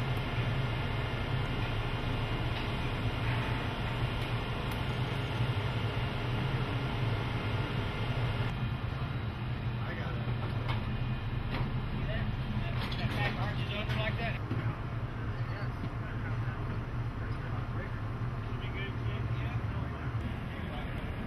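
A steady low mechanical hum throughout. About halfway in, indistinct voices and a few light clicks and knocks join it.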